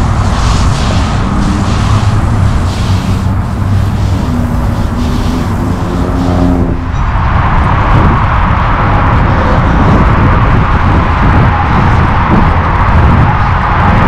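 Loud, steady outdoor background noise with a heavy low rumble. Its tone shifts about seven seconds in.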